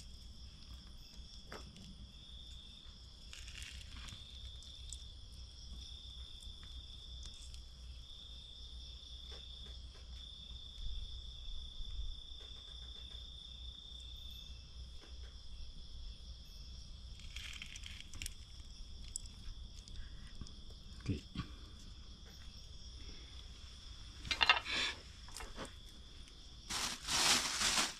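Insects trilling steadily in two high-pitched bands, the lower one pulsing on and off, with faint clicks and rustles of hand food preparation. A few louder knocks and rustles come near the end as kitchen things are handled.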